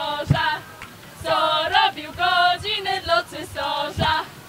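A group of girls singing a song together without accompaniment, in short phrases with brief pauses between them. A single thump sounds near the start.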